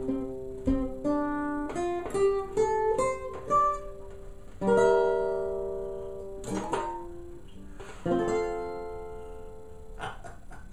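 Custom OME tenor banjo with a 12-inch head and 17-fret neck, played solo as the closing bars of the tune: a quick run of single plucked notes, then a ringing chord about halfway through, a short one after it, and a final chord near the end that is left to fade.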